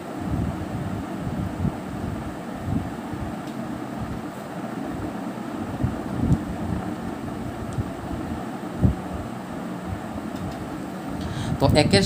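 Pen writing on paper: irregular soft taps and rubs as the pen moves and the hand shifts on the sheet, over a steady background hiss.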